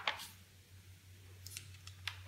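Paper pages of a thick handwritten notebook turned by hand: a brisk rustle right at the start and a fainter one about one and a half seconds in, over a steady low hum.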